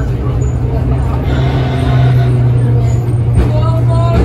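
Historic street tram running along its rails, heard from inside the driver's cab: a steady low hum with rumbling underneath that grows a little louder about a second in.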